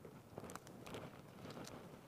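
Near silence: quiet room tone with a few faint, short clicks and rustles of handling noise.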